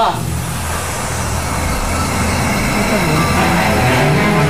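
Low, steady droning background music, with a low voice heard briefly near the end.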